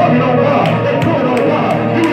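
Live church band music with guitar and a steady run of drum or cymbal hits, playing under the sermon.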